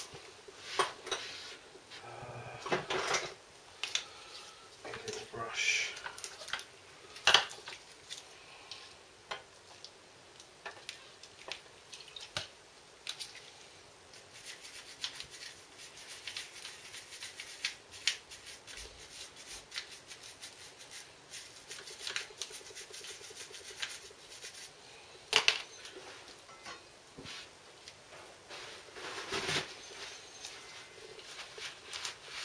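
Metal tools and brake parts handled by hand: scattered clicks and clinks of metal on metal. There is a sharper knock about seven seconds in and a quick double clink near the end.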